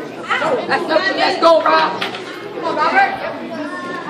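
People talking: several voices chattering in a large hall, none clear enough to make out.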